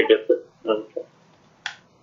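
A man's voice trailing off in the first second, then a single sharp click about a second and a half in.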